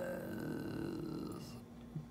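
A woman's drawn-out, creaky hesitation sound, a wordless "uhhh" that holds for about a second and a half and then fades out.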